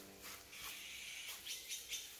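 Faint birds chirping, with a few short, sharp calls in the second half.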